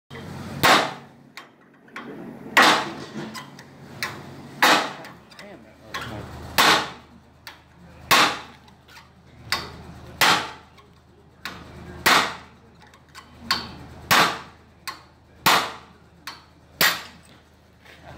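Steel hammer blows, metal on metal, on the pivot pin of a grapple bucket's hydraulic cylinder: about ten heavy strikes roughly two seconds apart, each with a brief ring, and lighter taps between them. The tight-fitting pin is hard to drive out.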